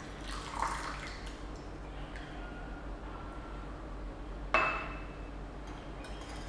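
Rinse water poured out of a glass teapot into a ceramic bowl, trickling and dripping, with small glass clinks. About four and a half seconds in, a single sharp glass clink rings briefly as the glassware is set down.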